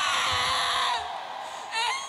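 A woman's long, high wailing cry into a handheld microphone, sliding down in pitch and trailing off about a second in.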